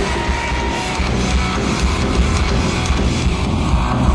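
Live rock band playing loudly: distorted electric guitars strumming over bass and drums, with a heavy low end.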